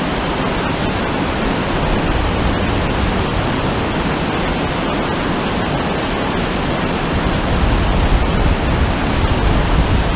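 Mountain waterfall pouring over rocks into a creek: a steady, dense rush of falling and splashing water, with a deep rumble underneath that grows a little near the end.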